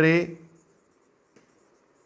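Marker pen writing on a whiteboard: faint strokes, with one small tick about a second and a half in. A man's voice says a single word at the very start.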